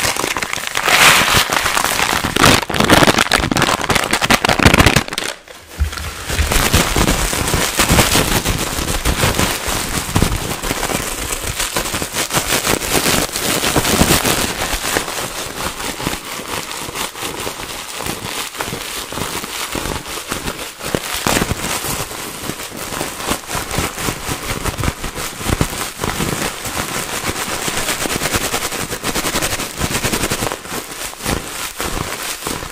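Plastic packaging crinkled and crushed by hand right against the microphone, making a dense, fast crackle of many small pops. It drops away briefly about five seconds in. After that a balled-up wad of clear plastic wrap is squeezed and kneaded.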